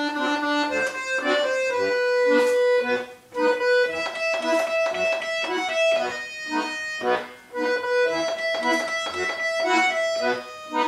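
Button accordion playing a song melody of held notes over a steady pulse of bass and chord notes, pausing briefly between phrases about three seconds in and again about seven seconds in.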